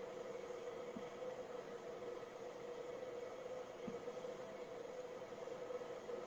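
Steady room noise in a small room: an even hiss with a constant mid-pitched hum, and two faint soft clicks, one about a second in and one near four seconds.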